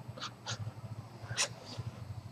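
Three short breathy sounds from a reclining person breathing through the mouth and nose, over a steady low hum.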